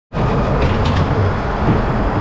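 Mack ghost-train ride car rolling along its track with a loud, steady rumble, a few faint clicks on top.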